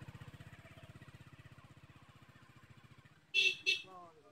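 An engine putting with a fast, even low beat that fades slowly, as if moving away. Just past three seconds in, two short, loud hissing bursts cut in over it.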